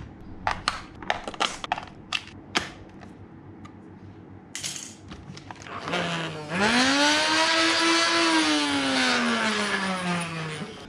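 Plastic clicks from handling the Nerf Ultra 2 blaster, then its battery-powered flywheel motor running: a whine that rises in pitch over about a second and a half, holds, then slowly sinks.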